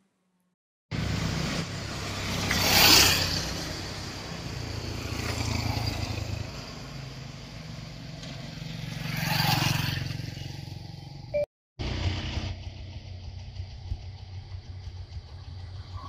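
Road traffic: motor scooters, motorcycles and cars driving past, with louder pass-bys that swell and fade at about three seconds and again near nine and a half seconds. A moment of silence opens it and a brief dropout falls near twelve seconds.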